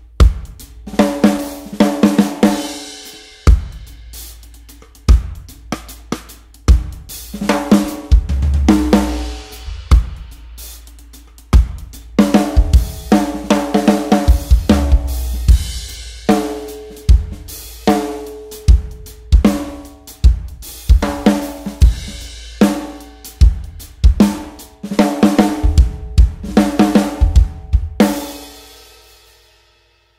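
Drum kit played in a groove with snare rimshots struck by the stick tip at the edge of the head and rim, bringing out the brass snare's ringing overtones, broken up by quick tom fills, bass drum and cymbal crashes. The playing stops and rings out near the end.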